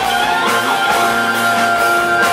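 Live rock band playing, with electric guitars holding long sustained notes and a few bending pitches.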